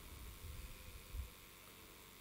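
Faint room tone during a pause in speech: a low rumble and hiss, with one soft low bump a little over a second in.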